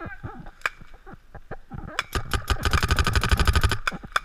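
Paintball marker firing: a few single shots, then a rapid burst of about a dozen shots a second for about a second and a half, starting about two seconds in.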